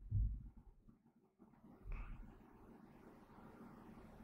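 Two soft, low thuds, one at the start and a weaker one about two seconds in, over faint steady room noise.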